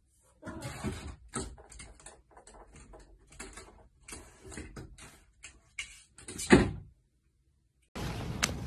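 A cat scrabbling and jumping against a closed door, claws scratching and paws knocking on it in a run of short irregular knocks and scrapes, with one louder thump about six and a half seconds in.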